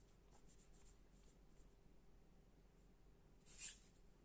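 Faint pencil strokes scratching on drawing paper, then a brief, louder rub on the sheet near the end, as an eraser is worked over the drawing.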